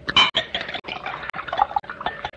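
Liquid trickling and dripping with small sharp clicks, like a drink handled in a glass, after a louder burst just after the start.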